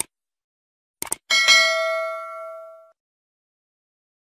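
Subscribe-button sound effect: a click, then two quick clicks about a second in, followed by a bright notification-bell ding that rings for about a second and a half as it fades.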